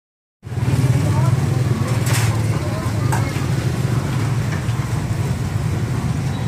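Street noise: a steady low rumble of motor traffic with faint voices of people around. A short hiss about two seconds in and a click about a second later.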